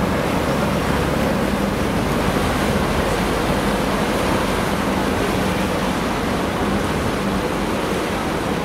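Passenger ferry's engine running with a steady low drone as the boat pulls away, its propeller wash churning the harbour water.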